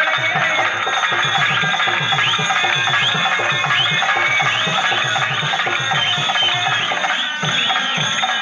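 Lively dance music from a stage band: a fast, steady drum beat under a melody with repeated upward slides, from a keyboard or harmonium.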